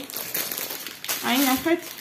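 Plastic snack wrappers and packaging crinkling and rustling as items are handled and lifted out of a cardboard box, with a short spoken phrase about a second in.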